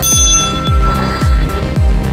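A small brass bell struck once, ringing with a clear high tone that fades out after about a second and a half. Background electronic music with a steady beat about twice a second runs underneath.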